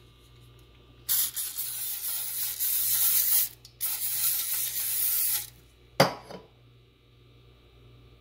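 Aerosol olive oil cooking spray sprayed into a nonstick skillet in two long hissing bursts, followed by one sharp knock about six seconds in.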